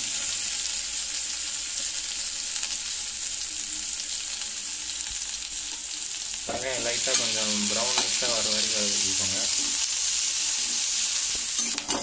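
Sliced onions sizzling in hot oil in an aluminium kadai, a steady hiss that grows louder about halfway through. A voice is heard briefly in the middle.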